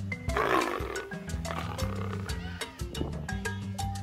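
A tiger roar about half a second in, trailing off over the next two seconds, over background music with repeating mallet-like notes and a bass line.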